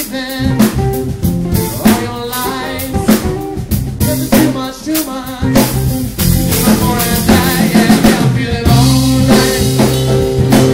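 Live rock band playing a mid-tempo groove: drum kit with rimshots on the snare and bass drum, under bass, guitar and keyboards. The band grows fuller and louder about six seconds in.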